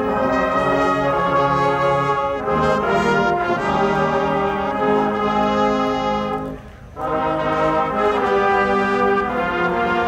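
Marching band playing loud held chords, brass led by sousaphones and trumpets with saxophones and clarinets. The sound breaks off briefly just before seven seconds in, then the full band comes back in.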